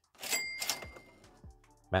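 A cash-register 'ka-ching' sound effect: a sudden metallic ring with a bright bell tone that fades over about a second, followed by faint background music.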